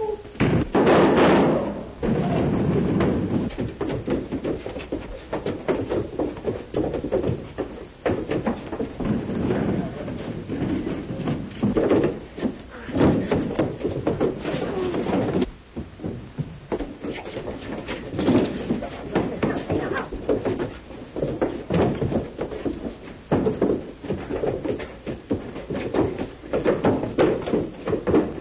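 Fight-scene commotion on an old film soundtrack: men shouting over one another amid repeated thumps, bangs and crashes of a scuffle.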